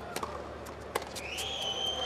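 Two sharp tennis ball strikes about a second apart, then a high, steady whistle-like tone that starts past the middle and holds.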